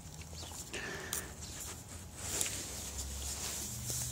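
Faint handling noises from hands working at a wheel on a balancer: light knocks and rubbing, with one clearer click about a second in.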